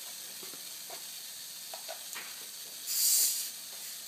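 Steady faint hiss of compressed air from a 4R air-bearing spindle running with carbon sleeves, with a few small ticks. About three seconds in comes a louder burst of air hiss lasting about half a second.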